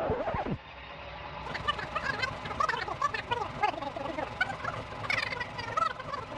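Fast-forwarded audio: the recording sped up into rapid, high-pitched chirping chatter with scattered clicks, getting denser and higher from about a second and a half in.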